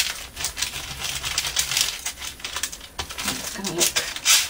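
A paper wipe rubbed back and forth over glued layers of paper, pressing them flat and wiping off surplus glue: a run of quick, uneven, scratchy rubbing strokes.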